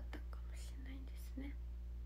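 A young woman's voice murmuring a few soft, short syllables under her breath after finishing a spoken sentence, over a steady low hum.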